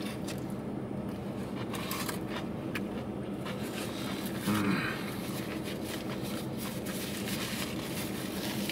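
Chewing with crinkling and rustling of a paper food wrapper and paper bag, over a steady low hum inside a car's cabin. A brief sound of the voice comes about four and a half seconds in.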